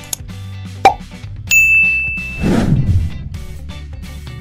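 Editing sound effects over background guitar music: a sharp pop a little under a second in, then a high, held ding lasting about a second, then a downward swoosh as the first puzzle appears.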